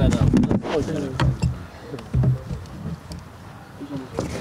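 Indistinct voices of people talking close by, with a few short clicks and knocks of handling.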